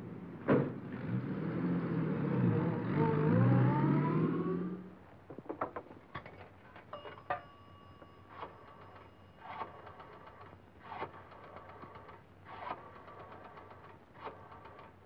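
A car door shuts and a 1940s sedan's engine revs up, rising in pitch as the car pulls away. Then coins click into a three-slot wall payphone with a brief ringing chime, and a rotary dial is turned and runs back again and again, one digit about every second and a half.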